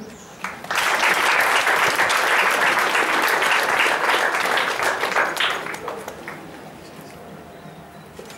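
Audience applauding: dense clapping that starts about half a second in and dies away after about five seconds.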